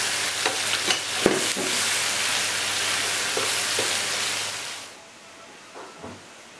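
Diced potato, minced pork and tofu sizzling in a wok as they are stir-fried with a wooden spatula, which knocks and scrapes against the pan several times, loudest a little over a second in. The sizzling cuts off about five seconds in, leaving faint room sound.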